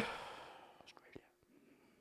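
A pause in conversation: the tail of a man's drawn-out 'uh' fades away at the start, then near silence with a couple of faint clicks about a second in.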